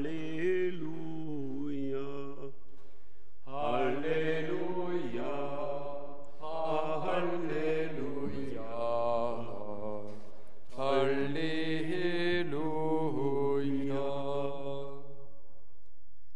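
Sung liturgical chant at Mass, a psalm or Halleluja response, in three drawn-out phrases with short pauses between them.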